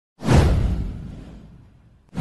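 Whoosh sound effect in an animated intro: a sudden swoosh with a deep low rumble that starts just after the beginning and fades away over about a second and a half.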